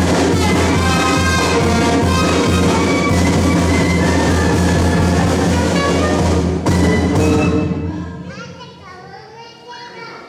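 A brass band with drums playing loudly. The music dies away about eight seconds in, leaving people's voices and children.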